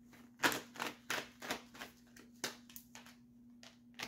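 Tarot cards being handled: a run of about eight short, irregular clicks and snaps of card stock as a card is drawn from the deck and laid on the spread.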